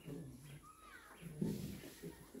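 A lull in the room: faint, low murmuring voices, a little louder about one and a half seconds in, with a few faint high chirps.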